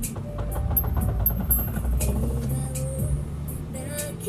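Low engine and road rumble of a car heard from inside its cabin, building as the car pulls through a turn and picks up speed, with a song playing underneath.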